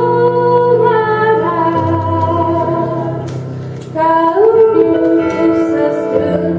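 A woman singing a Romanian Christian song solo, accompanied by an electronic keyboard playing sustained chords. She holds long notes, the sound dips briefly just before four seconds in, then a new phrase begins.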